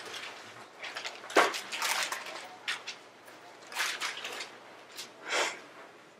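Paper rustling and Bible pages being leafed through close to a clip-on microphone, in short, scattered crinkly bursts.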